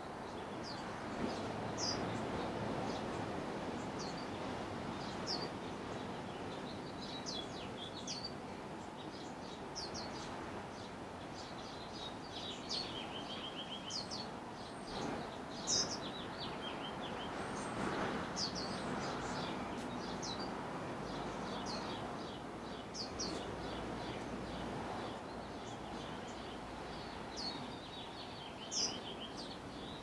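Short high bird chirps and brief trills from several birds, coming every second or so over a steady background rush.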